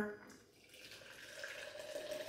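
Hot water pouring from an electric kettle into a blender cup: a faint, steady stream that grows gradually louder from about a second in.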